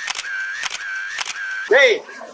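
Camera shutter sound effect clicking in quick pairs about twice a second, with a short high tone between the clicks. A brief loud voice cuts in near the end.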